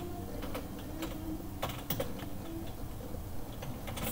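Typing on a computer keyboard: separate key clicks at an uneven pace, with short pauses between bursts.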